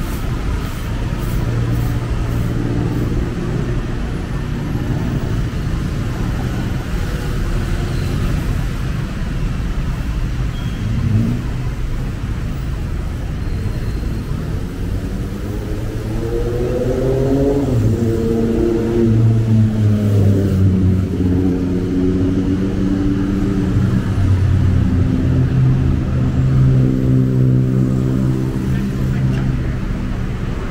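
Busy road traffic: cars and motorcycles running and passing close by, with engine notes that rise and fall as vehicles accelerate, growing louder in the second half.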